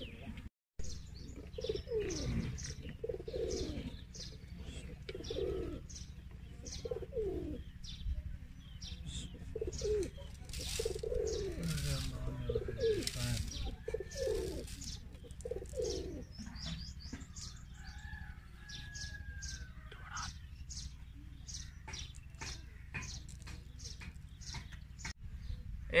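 Doves cooing again and again, low curving calls a few seconds apart, with small birds chirping. Light clicks and taps come through as grapes and a bowl are handled at a plastic blender jar.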